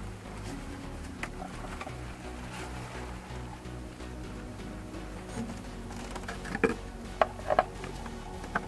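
Light plastic clicks and rustles as a cartridge oil filter on its screw-off housing cap is lifted out and held over a cut-down plastic water bottle. The clicks come a few at a time, loudest past the middle, over faint steady background tones.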